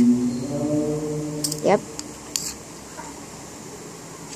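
A steady held vocal note, like a hum or sustained sung tone, for the first couple of seconds, ending with a short spoken "yep"; a few faint clicks follow, then quiet room tone.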